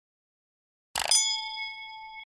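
A single notification-bell 'ding' sound effect: one sharp strike about a second in, then a bright ringing tone that fades slowly over the next second.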